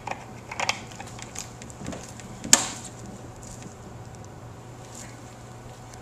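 Filler cap being screwed onto the top of a flame-polishing machine's electrolyte tank: a few small clicks in the first second, then one sharp knock about two and a half seconds in, over a steady low hum.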